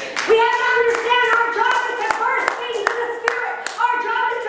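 A woman's voice through a microphone over steady rhythmic hand clapping, about two to three claps a second.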